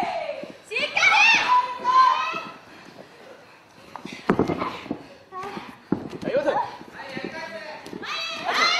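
High-pitched voices shouting and calling out, with two sharp thuds in the wrestling ring about four and six seconds in.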